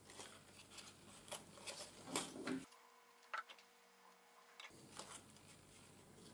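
Faint rustling and soft taps of thin card as fingers press the glued tabs of a paper polyhedron model together, with a stretch of near silence in the middle.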